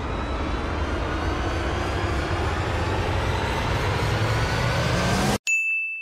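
A dense suspense swell that builds steadily and cuts off abruptly about five seconds in, followed by a single bright bell ding that rings out and fades.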